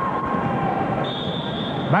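Arena crowd noise, with a single steady, high referee's whistle blast starting about a second in and lasting about a second, which authorizes the next serve.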